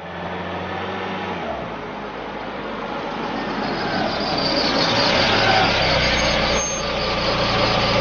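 A van driving in, its engine and tyres growing louder as it approaches and pulls into the yard.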